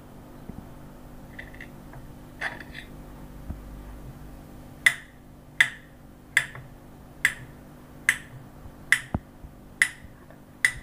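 Kitchen knife slicing a peeled banana into rounds on a plate. From about five seconds in, each cut ends in a sharp click of the blade on the plate, a little more than one a second, at a steady rhythm.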